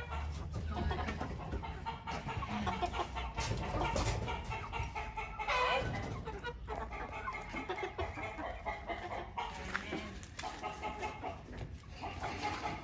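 A flock of chickens, roosters among them, clucking and calling steadily, with one louder call about six seconds in.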